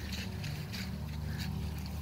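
Footsteps through wet grass, a faint soft step about every third of a second, over a steady low hum.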